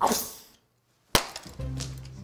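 An edited sound-effect sequence: a short rushing whoosh that fades within half a second, a gap of dead silence, then a single sharp crash-like hit a little after a second in, followed by low sustained music notes.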